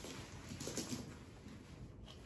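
Faint rustling and soft handling noises of a thick leather satchel and its shoulder strap being pulled on and adjusted, with a few soft knocks a little after the start.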